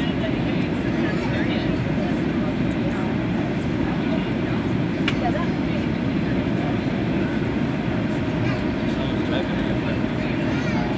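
Steady engine and airflow noise inside the cabin of a Boeing 737 descending on approach to land. Indistinct passenger voices murmur underneath, and there is a single light click about five seconds in.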